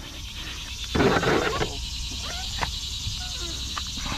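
A freshly caught crappie being handled on a plastic measuring board: a short rustling scuffle about a second in, then a sharp click, over a steady high insect drone.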